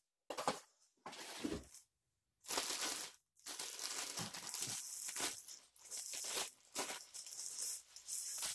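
Clear plastic wrapping crinkling and rustling in repeated bursts as a plastic-wrapped metal backdrop stand leg is handled, with a few soft knocks.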